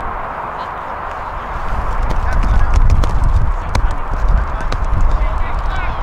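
Wind buffeting the microphone with a deep rumble, gusting harder from about two seconds in, with faint distant shouts from the pitch and a few sharp clicks.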